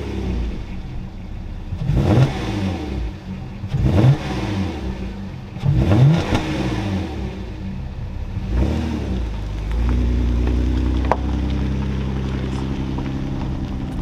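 A 2005 Porsche Cayenne (955) 3.2-litre V6, just started, revved several times about two seconds apart, each rev rising and falling back to idle. About ten seconds in the car pulls away, with a steady, lower drone.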